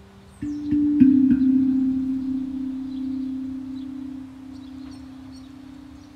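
A pandrum, a tuned steel hand drum, struck four times in quick succession about a third of a second apart, its low notes ringing on and slowly fading. Faint bird chirps sound in the background.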